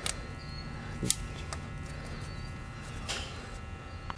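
Steady low electrical hum, with a sharp metallic click about a second in and a few fainter ticks and a brief scrape near the end, as the cap bolt is fitted by hand into an ATV engine's timing chain tensioner.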